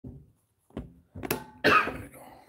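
A man coughing: four short coughs, the last the loudest and longest, near the end.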